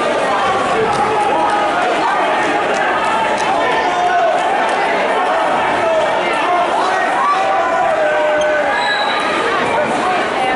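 Many voices talking and calling out at once, a steady crowd din in a gymnasium, with a few faint knocks.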